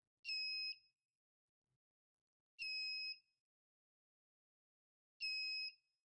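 Small buzzer added to a TP4056 lithium charger module, giving three shrill half-second beeps about two and a half seconds apart: the full-charge alarm, signalling that the 3.7 V lithium-ion cell is charged.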